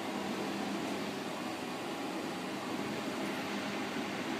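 Steady hum and hiss of a running kitchen appliance fan, with a faint low steady tone under it.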